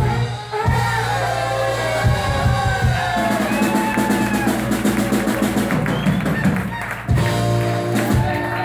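Live rock'n'roll band playing: electric bass, electric guitar and drum kit, with brief stops in the music about half a second in and again near the end.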